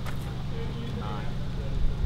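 A steady low motor hum runs under faint voices.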